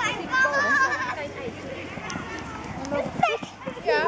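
Young children shouting and calling out as they run in a game of tag, with a high drawn-out call about a second long near the start.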